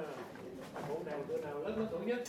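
Soft, indistinct voices murmuring in a small room, with no clear words.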